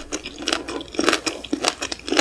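Close-miked chewing of a mouthful of stir-fried shrimp and vegetables, with a sharp crackling chew about twice a second.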